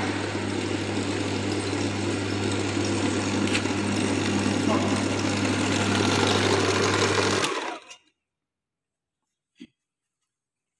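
The drive motor of a battery-charging training kit runs steadily with a low hum, turning a dynamo through a V-belt that is charging a lead-acid battery. About seven and a half seconds in it is switched off, and the sound dies away within half a second.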